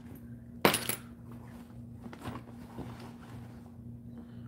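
Rummaging in a handbag: small objects and metal hardware clinking inside it, with one sharp clatter under a second in, then a few lighter clicks.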